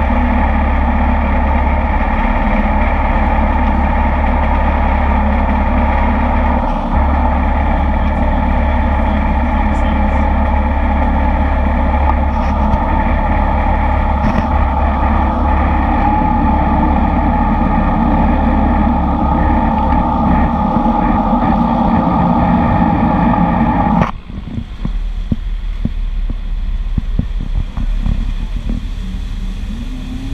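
Amphibious bus engine running steadily under load as the bus motors through the water. About three-quarters of the way through, the sound drops abruptly to a quieter, lower rumble as the bus nears the ramp.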